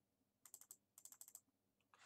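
Faint clatter of computer keyboard keys being pressed, in two quick runs of clicks: a few strokes about half a second in, then a longer run about a second in.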